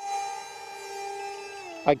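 Brushless electric motor spinning a 6x3 propeller on a foam park-jet F/A-18 model in flight on 4S, making a steady high whine. The pitch slides slightly lower near the end.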